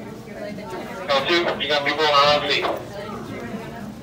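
People talking, with one voice loud and close for about a second and a half, starting about a second in, over a low murmur of other voices.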